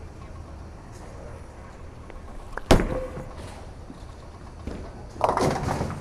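Roto Grip Optimum Idol Pearl bowling ball thrown down a lane: one loud thud near the middle as it lands on the lane. It rolls, then strikes the pins with a clatter near the end, over the low steady rumble of a bowling alley.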